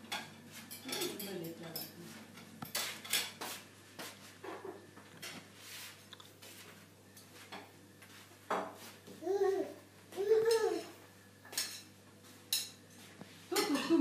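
Scattered sharp clinks and taps of a feeding spoon against a baby's plastic high-chair tray and its toys. A voice makes two short sing-song sounds about nine and ten seconds in.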